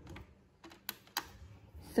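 Push-to-open plastic top cover of an ILIFE V5s Pro robot vacuum being pressed and unlatched: a few light plastic clicks, the two sharpest about a second in and a third of a second apart.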